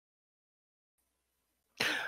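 Silence, then a man's short, single cough near the end.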